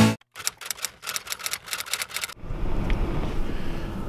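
A quick, uneven run of sharp typewriter-like clicks, several a second, lasting about two seconds. It then gives way to a low, steady rumble of car-cabin background noise.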